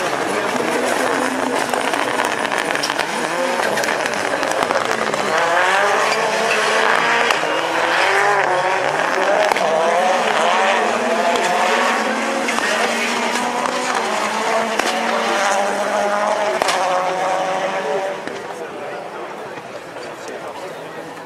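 Several rallycross cars racing past, their engines revving up and down through gear changes, with a few sharp cracks. The engines fade near the end.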